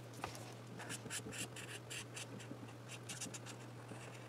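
Felt-tip 'Magic Color' marker scratching across the paper of a coloring booklet in quick short colouring strokes, about four a second, starting about a second in.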